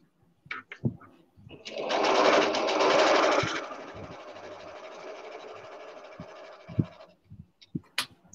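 Electric sewing machine stitching. It starts about a second and a half in, runs loudest for its first two seconds, then goes on more quietly until it stops about seven seconds in. A few light knocks come before and after.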